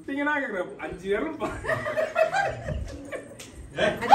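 People talking and chuckling together, with bits of laughter among the voices.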